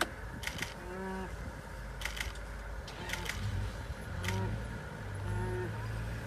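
Short pitched animal calls repeated roughly once a second from the struggle over the topi kill, with a few sharp clicks and a steady low hum underneath.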